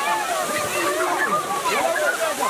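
A strong jet of water gushing up and splashing down onto the pavement and people, as the new town water supply flows, under a crowd of overlapping excited voices.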